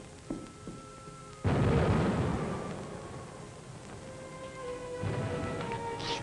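A sudden heavy explosion boom about a second and a half in, rumbling away over the next few seconds, like a bomb blast, with background music underneath.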